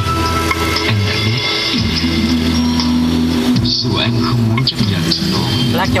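Music played loudly through a car's audio system, with heavy sustained bass notes and a short break in the music a little past halfway.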